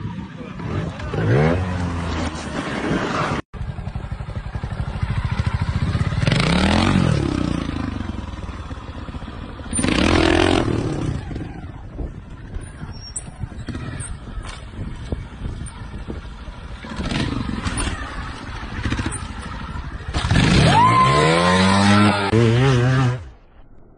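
Trials motorcycle engines revving in short blips that rise and fall back several times, the biggest rev near the end. The sound cuts out sharply for a moment about three and a half seconds in.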